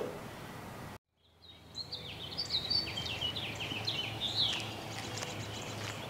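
Quiet room tone, a brief dead gap about a second in, then songbirds chirping and singing outdoors: many short, quick notes, some sliding in pitch, over a faint steady low hum.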